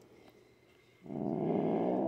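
A domestic calico cat's low, rough warning growl: after about a second of quiet it starts up again and grows louder.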